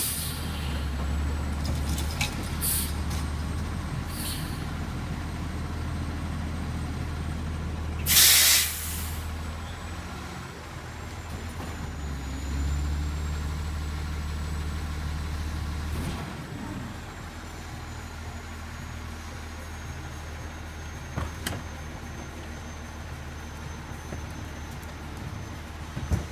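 Waste Management automated side-loader garbage truck's diesel engine running, louder for a few seconds at the start and again in the middle. A loud air-brake hiss lasting about a second comes about eight seconds in.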